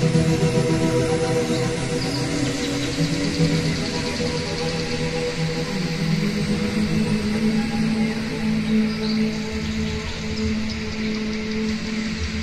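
Background music with long, slow held notes.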